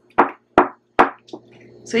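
Spoon knocking against a glass bowl while cornstarch and hot water are stirred into a gel: three sharp knocks about half a second apart, then a softer one.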